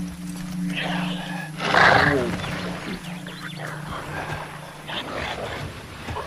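A wounded man groaning and crying out in pain, in several bursts; the loudest, about two seconds in, falls in pitch. Under the cries runs a steady low drone.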